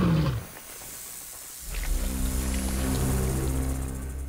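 A huge creature's growl, falling in pitch, ends about half a second in. Just under two seconds in, a low, steady music drone with a held chord comes in and sustains.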